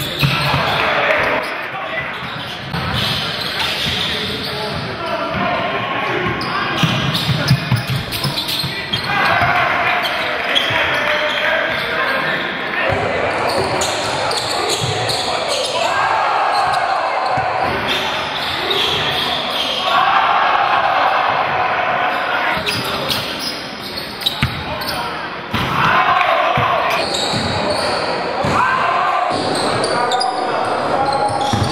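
Live sound of a basketball game in a large gym: a basketball bouncing on the hardwood court, with players' and spectators' voices echoing through the hall.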